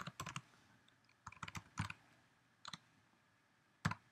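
Keys on a computer keyboard being typed in short scattered runs of a few keystrokes, with gaps of quiet between, the loudest keystroke near the end.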